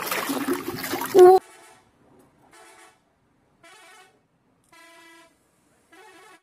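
Water splashing as a toy is washed by hand in a tub of muddy water, then, from about a second and a half in, a bus horn sounding four short, fainter blasts about a second apart.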